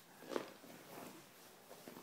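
Faint rolling and rattling of a small manual wheelchair moving across a wooden floor, with one light knock about a third of a second in.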